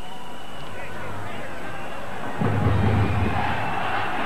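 Stadium crowd noise from the stands at a football match, a steady murmur that swells louder with a low rumble about two and a half seconds in.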